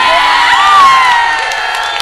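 A group of people cheering and shouting together, many voices overlapping, loudest a little under a second in.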